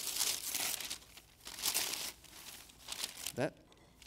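Wrapping paper being torn and crumpled off a gift box by hand, in a few crackling bursts. The loudest comes in the first second, with another about two seconds in.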